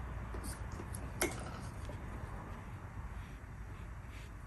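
Low steady room hum with one sharp light click about a second in and a few fainter ticks, from paintbrushes being handled at the painting table.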